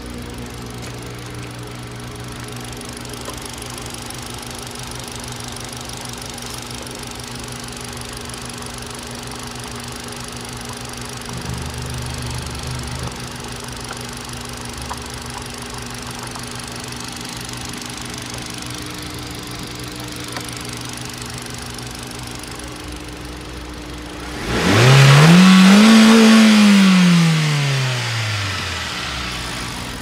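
Hyundai i10's 1.2-litre G4LA four-cylinder petrol engine idling steadily, with a slight lift in speed about halfway through. Near the end it is revved once: the pitch climbs over about a second and a half, then sinks back to idle over the next three seconds.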